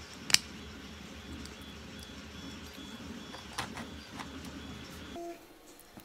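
Small plastic parts of a 3D-printed gear motor mount handled in the hands, with one sharp click about a third of a second in and a few softer clicks later. Under this runs a steady low room hum that drops away shortly before the end.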